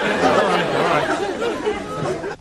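Several people talking over one another in a continuous hubbub of chatter.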